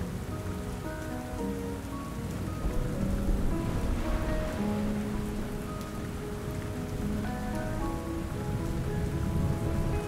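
Steady rain, with soft, slow background music of held notes changing every second or so.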